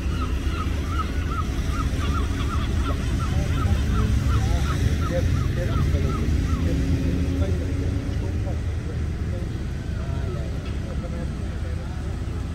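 A bird calling in a rapid, even series of short calls, about three a second, fading out about halfway through, over a steady low rumble.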